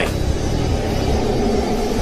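A shower running into a bathtub: a steady rushing noise with a heavy low rumble.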